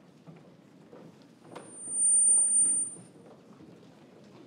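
Footsteps and shuffling of choir members' shoes on a wooden stage floor as they move into place. About halfway through, a loud, high, steady tone cuts in for about a second and a half, then stops.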